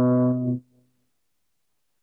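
Trombone holding a low sustained note, the last note of a phrase demonstrating the Lydian augmented scale, cut off about half a second in.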